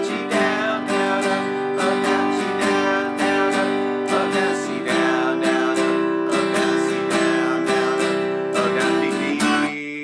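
Acoustic guitar strummed steadily in open chords, several strokes a second. Near the end the strumming stops and one chord is left ringing.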